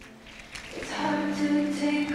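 A song with sung voices begins, rising from near quiet to steady held notes over the first second.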